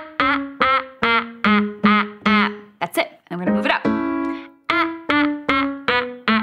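A woman singing a run of short, detached staccato 'ah' notes with her tongue stuck out, about two to three a second, stepping from note to note with a brief break a little past the middle, over held notes of an instrumental accompaniment. This is a vocal pitch-accuracy exercise, each note meant to be short, strong and connected.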